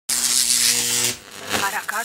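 A loud buzz with a hiss for about a second, cutting off suddenly, followed by brief snatches of a voice.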